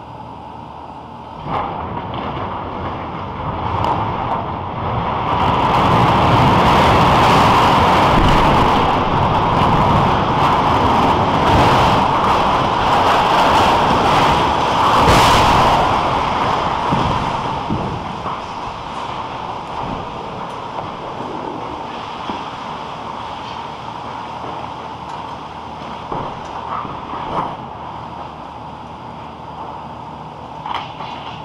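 Arecibo radio telescope's suspended instrument platform and its steel support cables collapsing into the dish: a sudden crack about a second and a half in, then a long, loud crashing roar that builds for several seconds, with a sharp bang near the middle, before slowly dying away into a lingering rumble with a few small late impacts of falling debris.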